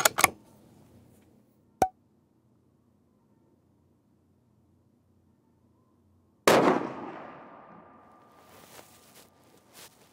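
A single rifle shot from a Sako S20 Hunter in .308 Win about six and a half seconds in, sudden and loud, its echo fading away over the next couple of seconds. A short click comes about two seconds in, and before the shot there is near silence.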